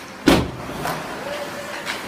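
A loud bang against the hockey rink's boards and glass right by the camera about a quarter second in, ringing briefly, then a lighter knock near the end.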